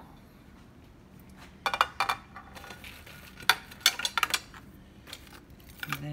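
A ceramic plate and kitchen utensils clinking and knocking on a counter as a plate is set down and a taco shell is laid on it: a couple of sharp knocks about two seconds in and a quick run of clinks around four seconds in.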